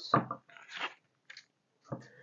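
A few faint, soft rustles and light scuffs of cupcake liners being peeled off a stack and set into a metal muffin tin.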